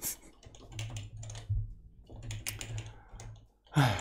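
Typing on a computer keyboard: runs of quick keystroke clicks separated by short pauses. Just before the end, a short laugh starts.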